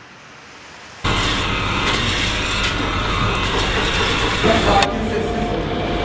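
Steady, loud indoor shop background noise that cuts in abruptly about a second in, replacing a faint hiss.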